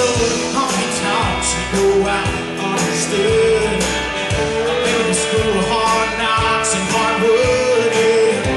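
Live country band playing, with electric guitars, bass guitar and drums to a steady beat.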